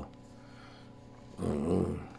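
Faint steady hum, then about a second and a half in, a short drawn-out vocal hesitation sound from a man, like a low "uhh" or "mm", just before he resumes talking.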